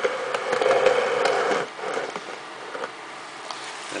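A small motor whirring steadily for under two seconds, typical of a camcorder's zoom motor as the view zooms out, with a few light clicks; then quieter, with scattered small clicks.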